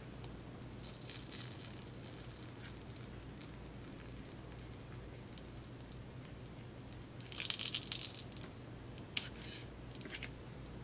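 Metal spatula scraping and prying under the edge of a glued blush pan. Short crackly scrapes come about a second in and again at seven to eight seconds, then a sharp click just after nine seconds as the pan works loose. A steady low electrical hum runs underneath.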